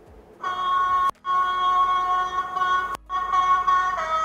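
Model train horn played by an HM7000 sound decoder in a Hornby HST, from its small onboard speaker. A steady horn note starts about half a second in and is cut off briefly twice, at about one second and three seconds, before sounding on.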